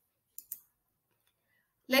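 Near silence, broken by two short faint clicks close together about half a second in; a woman's voice starts speaking near the end.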